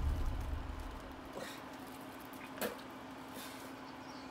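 Music fading out over the first second, then a quiet room with a faint steady hum and two faint clicks, the second, a little after halfway, the louder.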